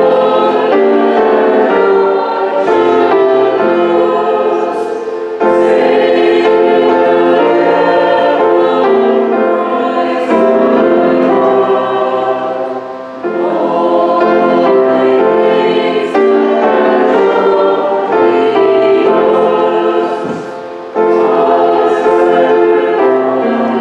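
Church choir and congregation singing a hymn together, line by line, with short breaks between the lines.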